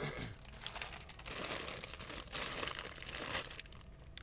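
Plastic bags of candy crinkling and rustling as a hand rummages through them and pulls them off a shelf, in irregular small crackles.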